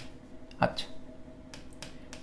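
A pen tip tapping against a writing board as a formula is written: about half a dozen short, sharp clicks spread unevenly over two seconds.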